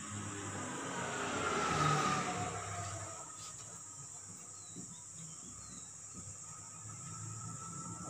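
Felt-tip marker writing on a whiteboard, squeaking and scratching for the first few seconds with a squeal that falls in pitch, then fading to a low, steady hum.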